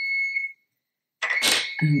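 Kitchen timer beeping with long, steady, high-pitched tones: one ends about half a second in and another starts just after a second in. It signals that banana bread baking in the oven is done.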